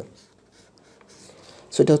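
A pen scratching on paper as a word is written out by hand. The writing is faint and is overtaken by a man's voice near the end.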